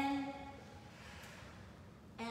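A person's voice: a short, steady held vowel at the very start, like an audible sigh on an exhale, then faint breathing.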